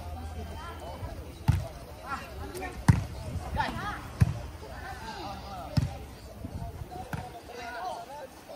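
A volleyball being struck back and forth in a rally: four sharp smacks about a second and a half apart, with players' calls and shouts between the hits.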